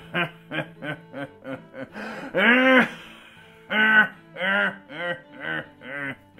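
A man's theatrical pirate laugh. It starts as a quick run of short "ha"s, then from about two seconds in turns to several longer, louder, drawn-out laughs.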